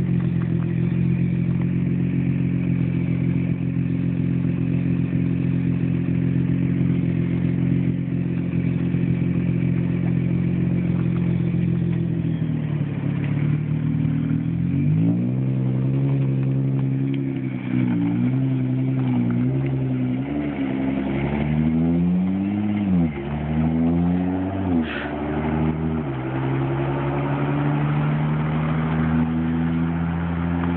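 Nissan R35 GT-R's twin-turbo V6 idling steadily, then, about halfway through, its pitch rising and falling again and again as it is revved and pulls away.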